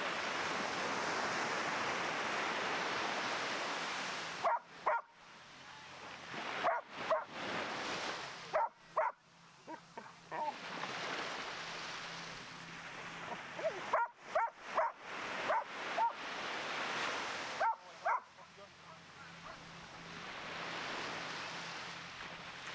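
A dog barking over and over in short bursts, from about four seconds in until about eighteen seconds, over the steady wash of small waves breaking on the shore. The waves alone fill the start and the end.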